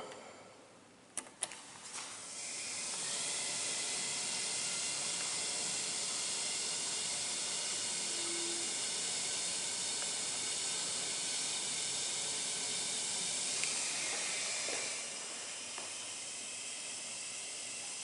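Hydraulic passenger elevator answering a hall call: a couple of clicks, then a steady hiss as the car comes down to the lobby. The hiss drops quieter a few seconds before the end as the car slows to level at the floor.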